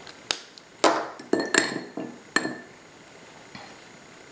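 Art supplies being handled on a tabletop: about five sharp clinks and knocks in quick succession, some with a short glassy ring, dying away after the first two and a half seconds.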